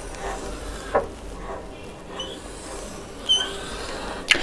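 Marker pen drawing on a whiteboard: soft rubbing strokes, a tap about a second in, and two short high squeaks in the second half.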